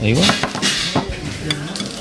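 Dishes clinking as a server sets plates and a metal sauce boat down on a table, several separate clinks and knocks.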